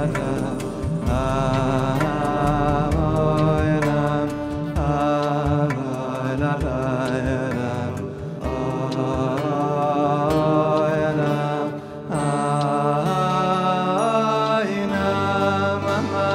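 A voice singing a slow, chant-like melody with vibrato over a steady instrumental accompaniment.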